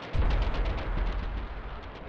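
A sudden low boom a moment in, then a heavy rumble under a rapid crackle of gunfire, over background music.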